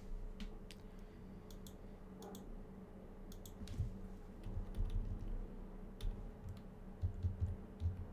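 Scattered, irregular key presses and clicks on a computer keyboard, with a few dull low knocks, over a steady low hum.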